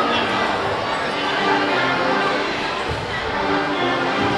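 Music playing over steady crowd chatter in a large gymnasium full of spectators.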